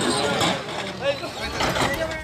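Several people talking, with a heavy engine running underneath and a low rumble swelling near the end.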